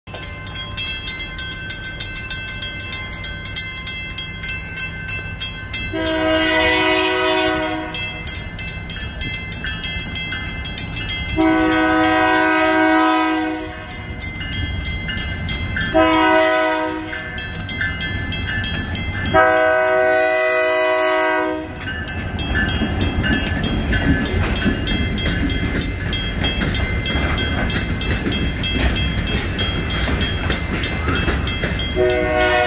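A locomotive horn sounds the grade-crossing signal: two long blasts, a short one and a long one, over the steady ringing of the crossing bell. About three quarters of the way in, the freight train's cars start running past close by, a loud, even rumble and wheel clatter with the bell still ringing.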